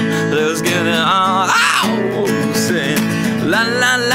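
Live acoustic guitar strummed in a steady rhythm, with a wordless vocal sliding up and down over it.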